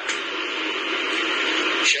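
A steady hiss like static, even and unbroken, that stops near the end.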